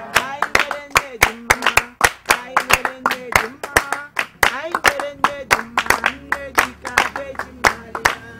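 Hands clapping in a steady rhythm, about four claps a second, along with group singing.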